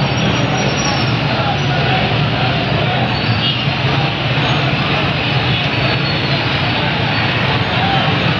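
Steady din of a slow-moving crowd of motorcycles and auto-rickshaws, their engines running at low speed, with many people's voices mixed in.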